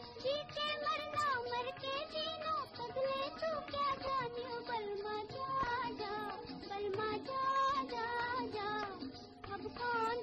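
A woman's high voice singing the melody of a 1951 Hindi film song, with instrumental accompaniment. The sound is that of an old film soundtrack, lacking the highest treble.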